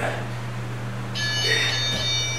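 An electronic workout interval timer beeping: one steady high electronic tone starting abruptly about a second in and lasting a little under a second, marking the end of a 30-second exercise set. A steady low hum runs underneath.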